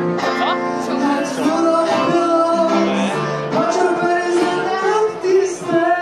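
A man singing live with his own electric guitar accompaniment, strummed chords through the stage sound system.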